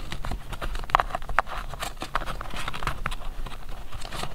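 Fingers flicking through a tightly packed stack of vintage paper scraps and cards in a box: a quick run of papery clicks and rustling, with two sharper snaps about a second in.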